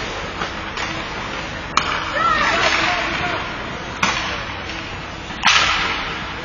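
Ice hockey skates carving and scraping across a rink, with sharp clicks of sticks and puck about two seconds in, about four seconds in, and near the end, where a louder skate-stop scrape follows.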